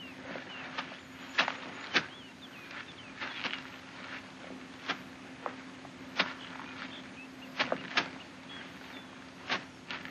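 Kung fu film fight sound effects: sharp, short swishes of arms and sleeves cutting the air, about eight of them spaced irregularly, over a steady low hum and faint bird chirps.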